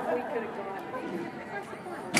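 Background chatter: several people talking indistinctly in a large, echoing indoor hall.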